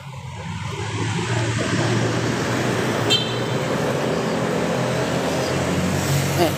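Motor vehicle engine running close by in street traffic. It swells over the first second, then runs steadily with a low hum, and a brief high-pitched squeak comes about three seconds in.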